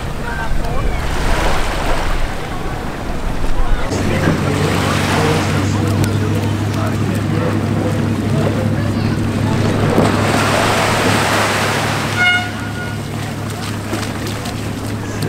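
Small waves washing onto a sandy beach, with wind on the microphone and indistinct voices in the background. A steady low hum runs under it from about four seconds in, and a short high tone sounds near the end.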